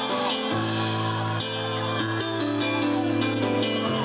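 Live rock band playing an instrumental passage: sustained chords on electric guitar over a bass line that moves to a new note about every second, with cymbal hits.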